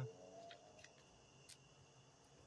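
Near silence: faint steady insect chirring in the background, with a few soft clicks from handling a small card wallet, about half a second, just under a second and a second and a half in.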